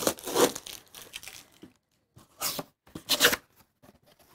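Tape being ripped off a corrugated cardboard box as it is pulled open, loudest in the first half second. Then two short bursts of cardboard scraping and flexing near the end, as the box is folded flat.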